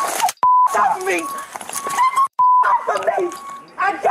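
Two short, steady high-pitched censor bleeps, about two seconds apart, each dropping in where the audio is cut out to mask swearing amid loud, heated shouting.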